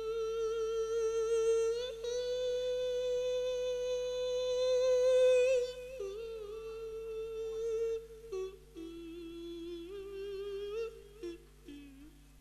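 A male monk's voice through a PA microphone, singing the long drawn-out, wavering held notes of a Thai Isan lae sermon chant. It holds one high note for about six seconds, then steps down to lower notes and breaks into shorter phrases near the end.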